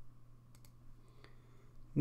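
Three faint computer-mouse clicks, two close together about half a second in and one just past a second, over a low steady hum.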